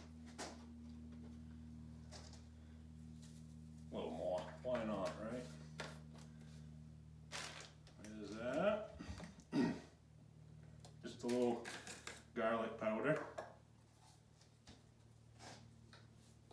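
A man talking quietly in short spells, with a couple of sharp clicks and a steady low hum underneath.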